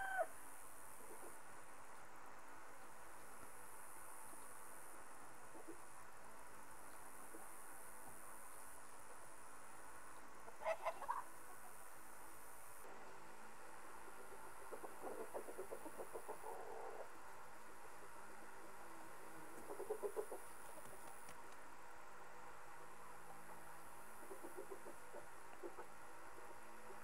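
Mostly quiet, with Dominique chickens making sparse sounds: one short call about eleven seconds in, then a few softer, fainter clucks later on.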